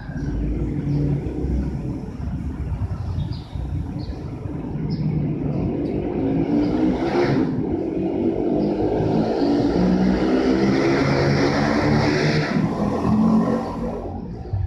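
A motor vehicle engine running, growing louder about halfway through and dropping away near the end.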